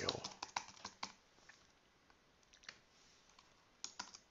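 Typing on a computer keyboard: a quick run of key clicks in the first second, then a few isolated taps, and another click near the end.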